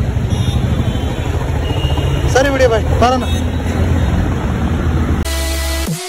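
Road traffic noise, a steady low rumble of passing vehicles, with a brief spoken word a couple of seconds in. About five seconds in it cuts suddenly to electronic music.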